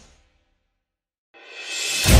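Edit transition: the previous sound fades out, about a second of silence follows, then a rising swoosh swells up over the last half-second and leads into background music.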